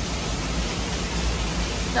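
Steady rushing of falling water from a waterfall, an even hiss with a low rumble underneath.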